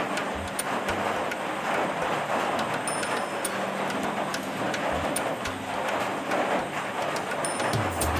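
Music playing steadily, a dense and unbroken texture with no speech over it.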